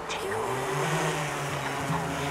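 Multirotor drone's propellers spinning up at takeoff: a buzzing hum that starts just after the beginning, rises a little in pitch over the first second, then holds steady.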